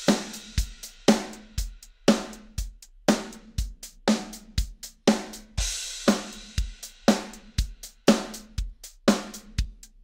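MT-PowerDrumKit sampled drum kit playing a steady MIDI groove. A kick drum hits about twice a second and a snare once a second, with hi-hat ticks in between and a cymbal wash at the start and again about six seconds in. The notes' timing is randomly shifted by a few milliseconds by a MIDI humanizer, which makes the groove subtly less robotic.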